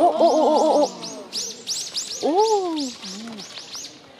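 A bird calling in a rapid series of high, thin, arched notes, about six a second, with a short break about a second in. A person's voice exclaims "oh" loudly at the start and again more briefly halfway through.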